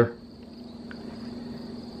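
Quiet background: a faint steady high-pitched whine with a low hum under it, and one faint tick about a second in.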